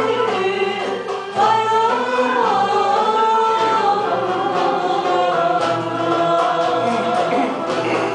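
Amateur choir singing a slow song, holding long notes and sliding between pitches. A new phrase starts loudly about a second and a half in.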